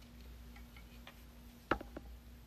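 A few faint ticks, then a sharper cluster of clicks near the end, as the circuit board in a bench PCB holder is swung from upright to flat for soldering.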